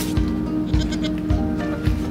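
Background music with a steady beat, and a goat bleating once, just under a second in.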